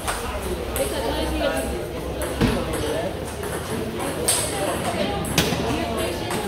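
Table tennis ball clicking off the bats and table during a rally: several sharp clicks at uneven intervals, over a background of indoor chatter.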